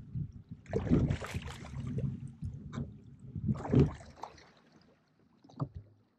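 Oars of an inflatable rowboat dipping and pulling through lake water, with water splashing and rushing along the hull. There are two strokes about three seconds apart, and it goes quieter near the end.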